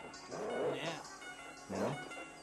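A pack of Doberman dogs barking, in two bouts about a second apart, over film score music.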